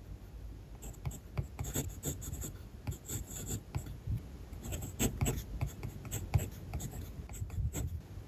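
Kaweco Special mechanical pencil lead scratching on paper in short strokes as Japanese kana are written by hand, with a brief pause about halfway.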